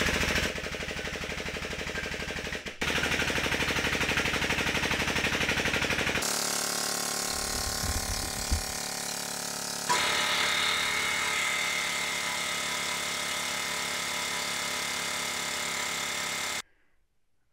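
Harbor Freight (Pittsburgh 8-ton long ram) air-over-hydraulic cylinder's air-driven pump running with a fast, even chatter as it drives a manual tube bender through a bend under load. The rhythm changes character a few times, near 3 s, 6 s and 10 s in, as the bend progresses.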